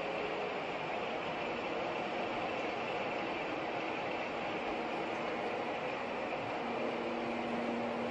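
Steady running noise of the machinery on a synthetic filament production line, with a faint low hum that holds at one level.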